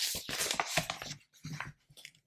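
A large paper instruction sheet being turned over: rustling paper at the start, then a scatter of short crinkles and scrapes as the page is laid flat, dying away near the end.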